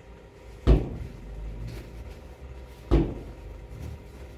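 Two dull thuds about two seconds apart, as a quilted jacket is set down and spread on a pile of clothes on a table.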